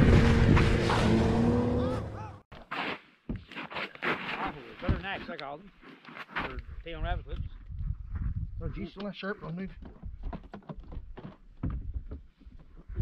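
A snowmobile engine running steadily with wind noise. It stops suddenly about two seconds in, leaving faint, distant voices of men talking and small knocks.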